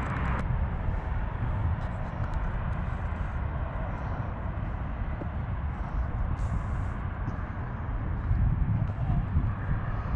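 Outdoor ambience dominated by a low, uneven rumble of wind on the camera microphone, with no clear event standing out.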